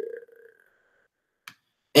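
A faint hummed voice trails off, then a single sharp click sounds about one and a half seconds in, against otherwise dead silence.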